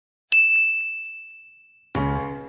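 A single bright ding sound effect: one sharp strike whose high tone rings out and fades away over about a second and a half, with a couple of faint ticks just after the strike.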